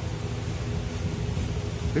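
A steady low rumble with a faint even hum, with no clear events in it.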